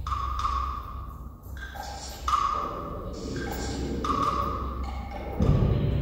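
Electroacoustic concert music with percussion: a mid-pitched ringing tone sounds three times, about every two seconds, among shorter higher and lower tones over a steady low rumble, with a dull low thud near the end.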